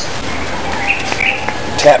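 A bird chirping a few times about a second in, over a steady background hiss.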